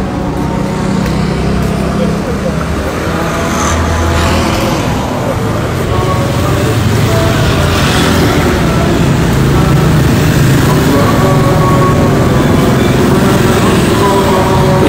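Street traffic noise: motorcycles and cars running along the road, a steady rumble with indistinct voices mixed in.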